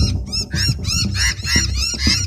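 Several noisy miners giving rapid, repeated harsh alarm calls, about six a second with the birds overlapping: mobbing calls at an intruder near their tree. Background music plays underneath.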